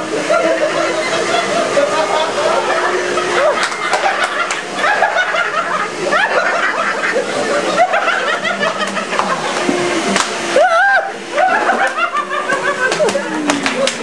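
Several men talking, shouting and laughing together over the steady hum of a running shop vacuum. The hum stops about ten seconds in.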